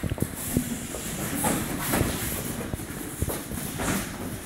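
Irregular thuds, slaps and scuffs of two people sparring barefoot on foam mats: feet stepping and strikes landing, with the rustle of karate gi fabric.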